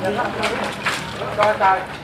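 Several people talking in the background, their words not clear.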